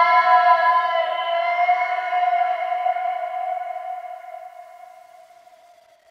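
The end of a sped-up hip-hop track: the beat has dropped out and a held, many-toned chord rings on, fading away to silence over about five seconds.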